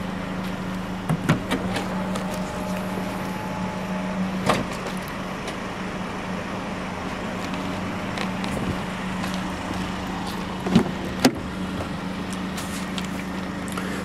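BMW X1 electric tailgate closing: a faint motor whine for about three seconds, ending in a knock as it latches, over a steady low hum. A few light clicks follow later.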